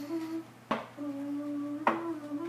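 A man humming a held, nearly steady note, with two sharp knocks about a second apart, in time with his hands on a wooden ledge.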